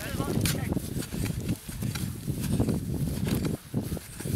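Wind buffeting the microphone, a loud, uneven low rumble, with a voice heard briefly at the start.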